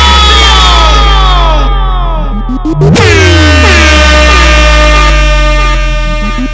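Loud DJ competition mix: a deep, sustained bass drone under stacked horn-like tones that slide downward in pitch. A sharp hit about halfway through sets off a new round of falling tones.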